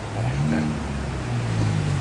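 A car engine running with a steady low hum whose pitch shifts slightly.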